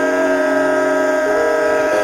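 Background music of sustained keyboard chords, held steady tones with the lower notes changing once a little past the middle.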